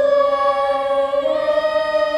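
A young stage-musical cast singing together in chorus, holding long sustained notes, with the harmony shifting about two-thirds of the way through.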